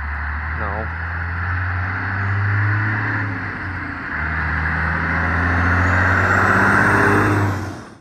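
A large road vehicle's engine running as it approaches, a loud, steady low drone that drops away briefly about three and a half seconds in and picks up again, with a rising whine near the end before it cuts off suddenly.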